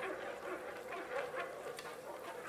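Metal spatula stirring in a nonstick frying pan over a gas flame, a few light taps and scrapes over faint sizzling of galangal frying in hot oil.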